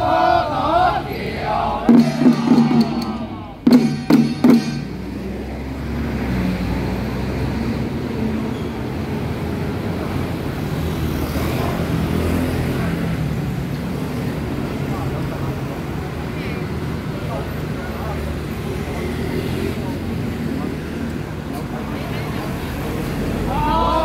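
Chanting voices break off, and a couple of quick flurries of strikes on handheld long-handled ritual drums follow about two and four seconds in. After that comes a steady murmur of street hubbub and traffic.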